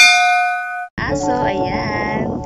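Notification-bell ding sound effect, struck once and ringing out for under a second. Music starts about a second in.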